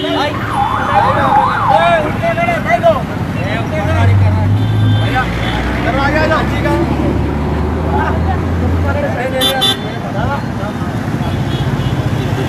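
Street noise of voices and traffic. A siren yelps rapidly up and down for about the first two seconds, and a vehicle engine hums low and steady from about four to nine seconds in.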